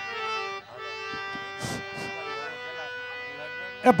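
Harmonium holding steady reed notes between sung lines, with two brief hissy sounds around the middle. A man's singing voice comes back in just before the end.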